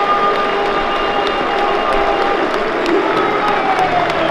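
Large football stadium crowd cheering and clapping steadily, with a few held notes sounding through the noise.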